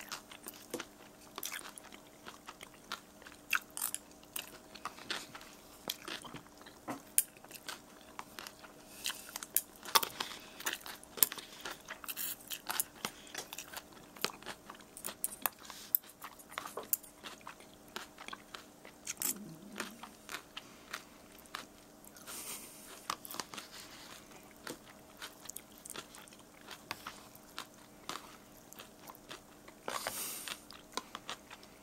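A person chewing ramen noodles with chopped dill pickle close to the microphone: an irregular run of small wet mouth clicks and crunches, over a faint steady hum.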